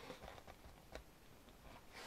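Near silence, with faint paper handling from the large pages of a photobook album being turned: a couple of soft ticks, one near the start and one about a second in.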